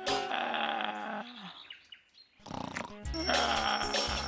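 A long, low vocal grunt from a cartoon character that falls in pitch at the end, then a short pause. Background music with a steady low beat comes in about three seconds in.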